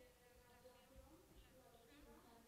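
Near silence: room tone with a faint steady hum, in a pause between a presenter's sentences.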